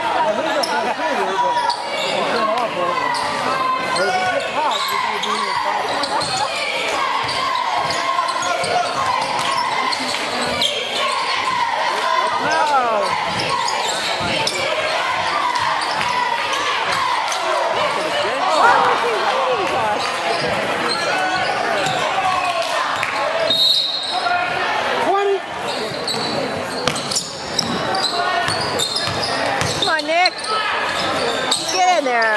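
Spectators chattering in a large, echoing gymnasium during a basketball game, with a basketball bouncing on the hardwood court.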